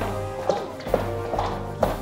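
Tense background music score built on a steady low held drone, with three sharp taps: one about a quarter of the way in, one near the middle and one near the end.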